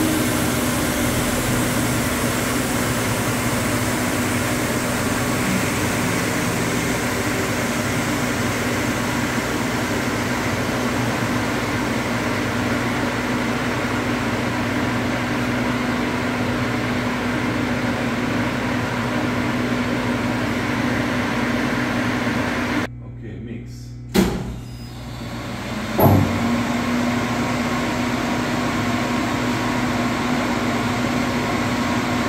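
Seydelmann K120 AC8 bowl cutter running empty with a steady mechanical hum and a constant low tone. Near the end the sound drops away for about three seconds, broken by a sharp click, then resumes as before.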